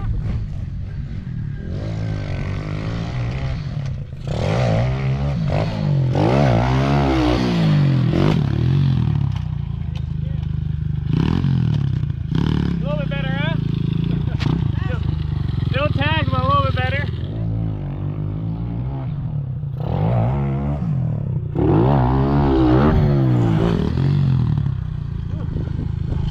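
Small pit bike engine being ridden on a dirt track, revving up and easing off three times, its pitch rising and falling over a steady low drone.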